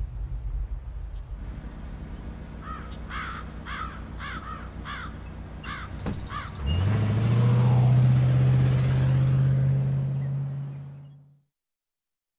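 A run of about seven short, arched bird-like calls. Then, just past halfway, a car's engine comes in suddenly as a loud steady low drone with a rush of air noise, and fades out shortly before the end.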